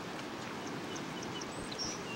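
Steady outdoor background noise with a few faint, short, high-pitched chirps scattered through it.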